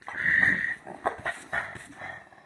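A pet dog making a vocal sound: one long, noisy call lasting about half a second, followed by several shorter sounds.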